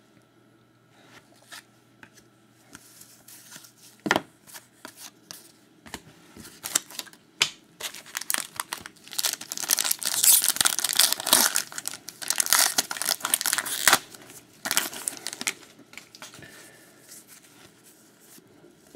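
A trading-card pack wrapper is torn open and crinkled, with packaging handled alongside. A single click about four seconds in is followed by scattered rustles, then a dense stretch of tearing and crinkling from about nine to fourteen seconds in that dies away toward the end.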